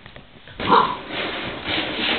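Goldendoodle puppy sniffing and nosing at a plastic milk jug, the jug rustling and scraping as she pushes it. The sound starts suddenly about half a second in and continues.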